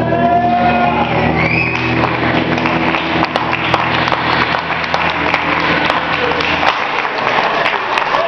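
A live surf rock band ends a song on a held electric guitar and bass chord that rings on and dies away near the end. About two seconds in, audience applause and cheering start and carry on over it.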